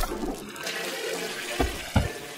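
Toilet flushing: a rush of water that fades out after about a second and a half, followed by a short thump near the end.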